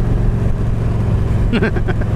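Yamaha V-Star 1300 Deluxe's V-twin engine running steadily at cruising speed, with road and wind noise, heard from the rider's seat. A short laugh or vocal sound comes near the end.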